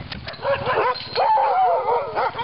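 A hooked-up team of sled dogs barking, yipping and howling all at once, many overlapping voices with one long wavering howl through the middle: the eager clamour of dogs about to set off on a run.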